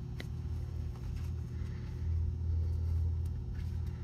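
A steady low rumble with a hum under it, growing a little louder about halfway through, and a faint tick near the start.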